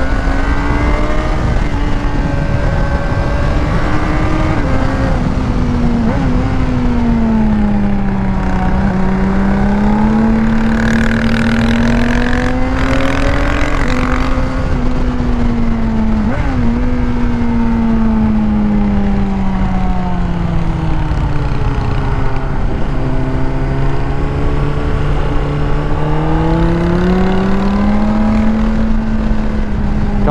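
Honda CBR600RR's inline-four with a Yoshimura exhaust and removed catalytic converter, running under way at mid revs. Its pitch rises and falls slowly as the throttle is worked through the bends, over steady wind noise, with a stretch of louder hiss in the middle.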